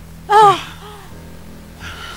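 A woman's short, loud voiced gasp of shock about half a second in, falling in pitch, followed by a fainter second gasp.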